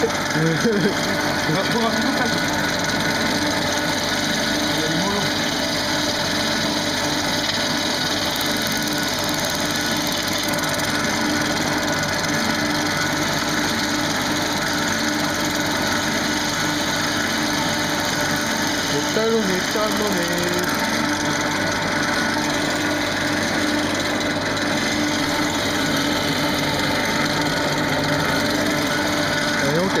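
Wood lathe running while a gouge cuts the spinning wood blank: a steady, unbroken sound of the tool shaving wood over the machine's hum.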